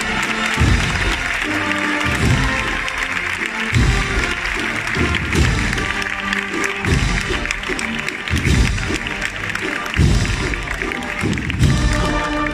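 A processional brass-and-drum band (agrupación musical) playing a march, with a heavy bass-drum beat about every second and a half under the cornets and brass. Crowd voices run beneath it.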